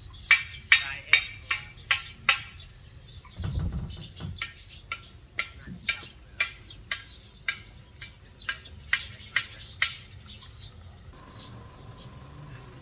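Hammer blows ringing on metal, a steady run of about two to three strikes a second that stops about ten seconds in. A dull low thump comes a few seconds in.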